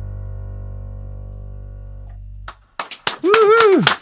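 The final chord of an acoustic guitar and bass guitar song, ringing and slowly fading, then stopping abruptly about two and a half seconds in. A few clicks follow, then a short voiced exclamation near the end.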